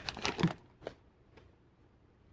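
Foil wrapper of a Panini Illusions basketball card pack crinkling as it is pulled open, stopping about half a second in. Two faint ticks follow.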